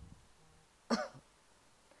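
A woman's single short, breathy laugh about a second in, falling in pitch; otherwise low room noise.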